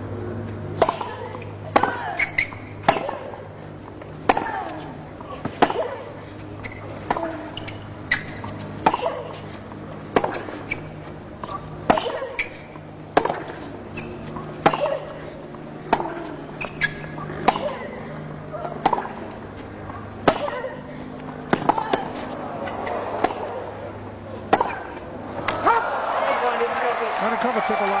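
Tennis ball struck by rackets in a long rally, a sharp crack about every second and a half, followed near the end by crowd applause when the point is won.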